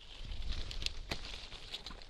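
Hand pruning shears cutting off a steep upright shoot on a young fruit tree: a sharp snip or two about a second in, amid rustling of leaves and twigs being handled.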